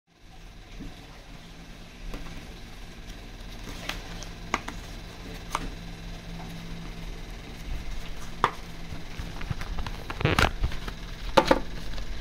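A small cardboard box being handled and opened on a wooden tabletop: scattered taps, clicks and scrapes of the box and flap, the loudest a couple of knocks near the end, over a low steady hum.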